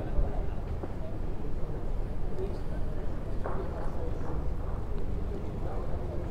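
Steady low rumble of indoor hall noise with faint, indistinct murmured voices in the background.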